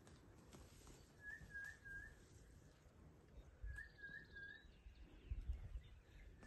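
A faint bird call: a phrase of three short, rising whistled notes, repeated three times about every two and a half seconds. A few low thumps come about five seconds in.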